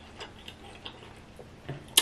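A person chewing seafood with the mouth closed: a few faint, irregular mouth clicks and lip smacks.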